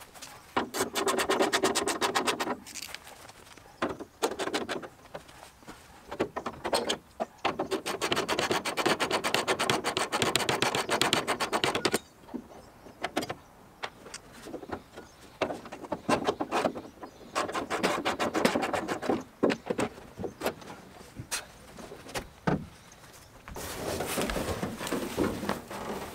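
A ratchet wrench clicking in several quick runs with pauses between them, as the hood's hinge bolts are loosened. A rustling, scraping handling noise near the end.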